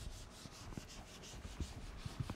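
Whiteboard eraser being wiped across a whiteboard in quick repeated strokes, about three a second.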